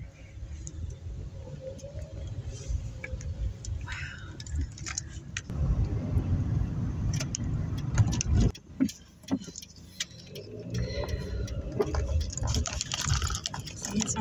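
Inside a moving car: a low rumble of engine and tyres on a wet street, louder for a few seconds midway, with scattered light clicks and jingling rattles from inside the cabin.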